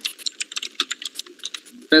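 Rapid, irregular typing on a computer keyboard, many key clicks a second. Near the end a voice cuts in.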